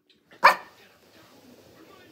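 A small dog barks once, a single short, sharp bark about half a second in.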